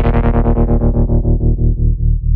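Electronic hip-hop workout music with no vocals: a held chord over a rapidly pulsing bass. Its treble is swept away steadily, so the music grows duller and more muffled.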